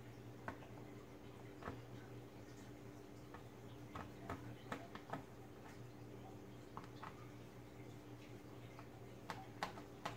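Faint, irregular clicks and ticks of a small screwdriver working the screws of a laptop's plastic bottom access panel, over a low steady hum.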